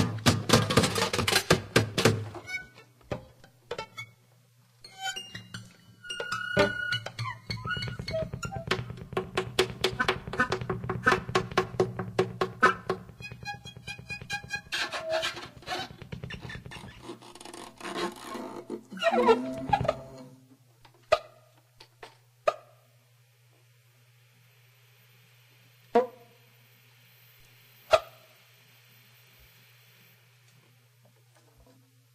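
Free-improvised music from a small ensemble of strings, guitars, reeds and electronics: a dense, scratchy stream of short plucked, struck and clicking sounds over a steady low hum. After about twenty seconds it thins out to a handful of isolated sharp notes separated by near quiet.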